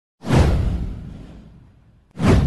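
Whoosh sound effect from a news intro sting: a sudden hit about a quarter second in, with a deep boom under a falling sweep, fading out over about a second and a half.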